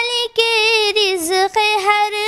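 A young female singer sings an Urdu hamd, a hymn praising God, into a microphone with no accompaniment heard. She holds long high notes with melodic turns, breaking briefly twice.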